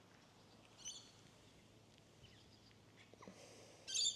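Near silence with a small bird's brief high chirps, once about a second in and again, louder, near the end.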